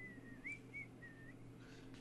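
Faint whistling: a few short, wavering high notes that stop about two-thirds of the way through, over a low steady hum.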